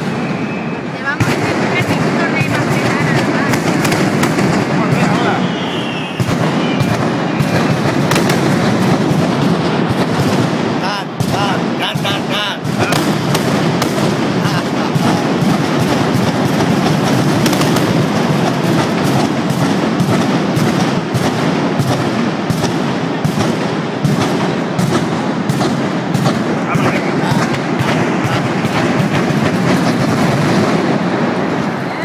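Mascletà: a dense, continuous barrage of firecrackers going off in rapid succession, with only a brief slackening about eleven seconds in.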